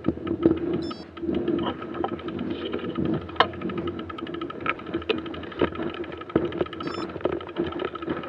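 Mountain bike rolling slowly over a snowy trail, picked up by the bike-mounted camera: irregular clicks and knocks from the bike over a steady hum.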